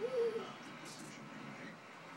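A toddler's short hooting "ooh" at the start, one pure-sounding note that rises and falls in pitch over under half a second.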